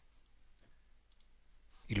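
A few faint computer mouse clicks during a pause.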